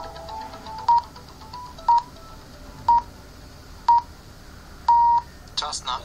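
Radio time signal: five short beeps at one pitch, a second apart, then a longer sixth beep; the start of the long final beep marks the exact time. Faint music plays underneath.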